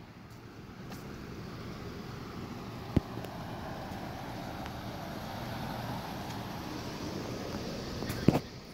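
Police SUV engines running, a steady vehicle noise, with a single sharp click about three seconds in.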